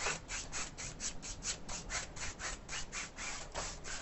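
A two-inch brush's bristles scrubbing oil paint onto a canvas in quick back-and-forth strokes, about five a second, stopping just before the end.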